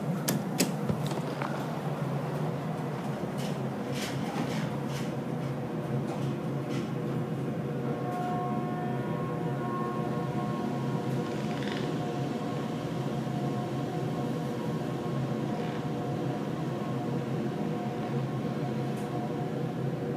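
Montgomery Kone elevator carrying its car down to the ground floor: a few clicks and knocks in the first seconds as the doors shut and the car starts, then a steady hum with a whine from the machinery as the car travels.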